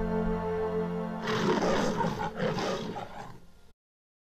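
Sustained low music tones, then about a second in a loud animal-like roar sound effect that fades away and gives way to dead silence near the end.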